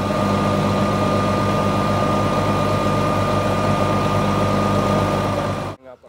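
Construction machinery engine running steadily, with a constant high whine over a low drone. It cuts off suddenly near the end.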